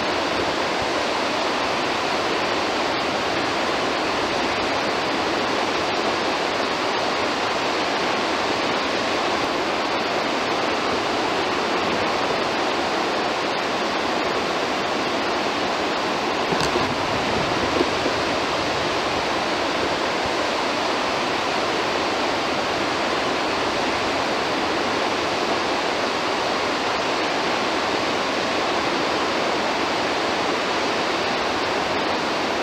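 Water rushing steadily and unbroken through the open spillway gates of the Afobaka Dam, which are releasing excess water from an over-full reservoir. There are a couple of faint knocks about seventeen seconds in.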